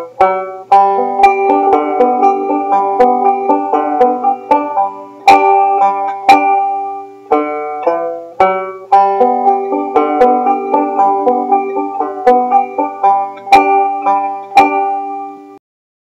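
Five-string banjo fingerpicked in a steady alternating thumb roll, a continuous run of bright plucked notes. It stops shortly before the end.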